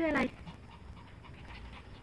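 A Pomeranian dog panting faintly.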